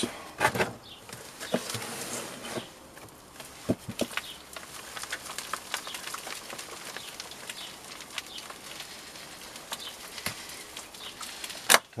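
Compost being sifted through a plastic mesh crate used as a sieve: a faint steady rustle and patter of soil falling through, with scattered knocks of the plastic crate and a sharp knock near the end.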